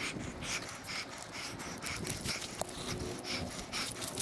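A hiker's footsteps and trekking-pole strikes on a dry, leaf- and grass-covered trail, sped up four times, giving a quick run of rustling, crunching strokes at about three a second.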